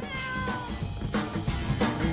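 A single cat meow, falling in pitch, at the start, over background music that picks up a drum beat about a second in.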